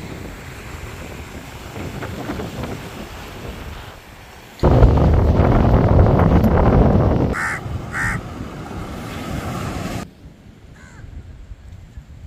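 Surf washing on a beach with wind on the microphone. About four and a half seconds in, loud wind buffeting the microphone takes over. Partway through it a crow caws twice, and a fainter caw follows near the end.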